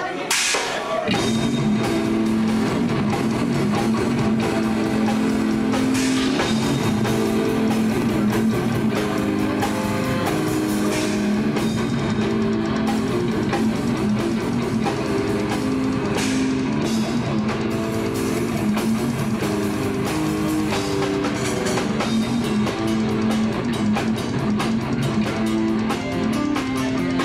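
Metal band playing live and loud: distorted electric guitars, bass guitar and a drum kit, kicking in about a second in and driving on steadily.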